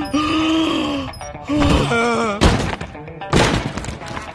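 Film soundtrack: a man's drawn-out wavering cries over music, then two heavy thuds about two and a half and three and a half seconds in, as of a body crashing down.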